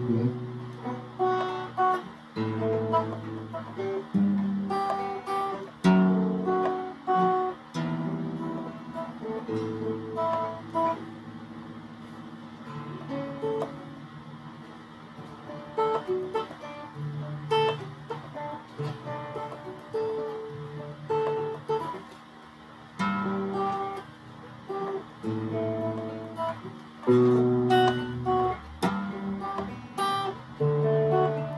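Electric guitar played solo, a string of separately picked notes and arpeggiated chords, with a few louder struck chords about six seconds in and near the end.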